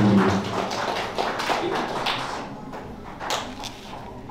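A few scattered light taps and knocks, the sharpest about three seconds in, after a brief voice at the start.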